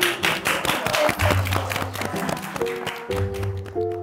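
A small group of people clapping their hands over background music, the claps thinning out and stopping near the end.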